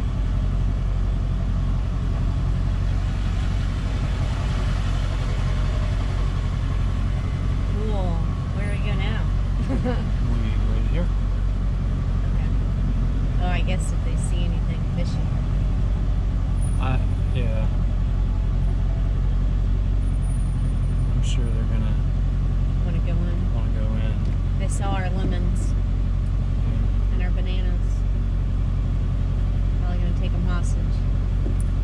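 Pickup truck's engine and drivetrain running steadily at low speed, a constant low rumble heard inside the cab. Brief, faint bits of voice come and go over it.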